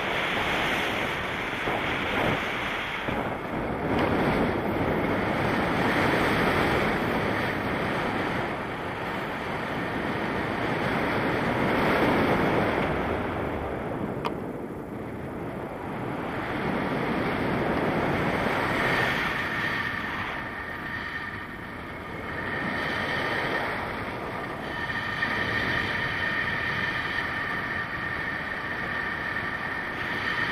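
Airflow buffeting the camera microphone in flight under a paraglider: a steady rushing wind noise that swells and eases every few seconds. In the second half a faint, steady high tone comes and goes beneath it.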